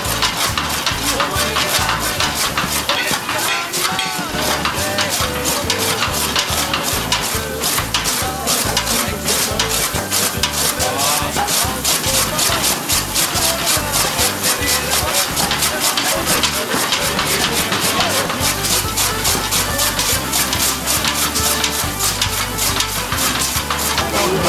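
Old flywheel chaff cutter chopping straw: the blades on the spinning flywheel cut the fed straw in a rapid, even clatter, with the rustle of straw.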